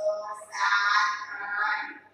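A woman's voice in a drawn-out, sing-song chant: a short syllable, a brief pause, then one long phrase.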